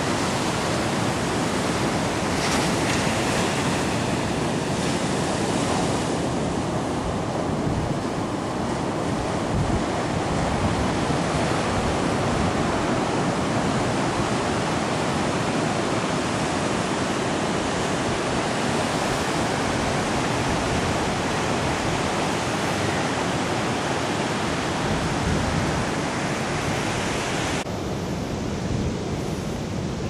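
Heavy surf: big waves breaking and washing up a stony beach in a continuous rushing noise. About two seconds before the end the sound turns duller and a little quieter.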